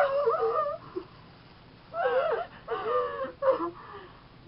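Two young women giggling in high-pitched squeals, in several short bursts with a lull of about a second after the first.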